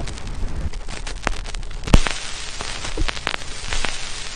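Crackle and hiss of an old-film sound effect: an even hiss scattered with small clicks, a sharp pop about halfway through, then a louder hiss.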